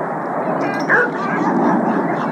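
A dog gives one short, high-pitched call about a second in, over a steady background rumble.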